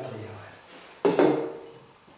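A zinc sheet-metal pot set down on a table: one sudden knock about a second in that fades away over most of a second.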